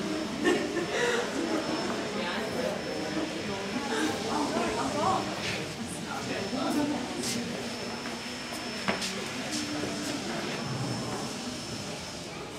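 Indistinct voices of people talking in the background, with a faint steady high-pitched tone and a couple of sharp knocks, one about half a second in and one near nine seconds.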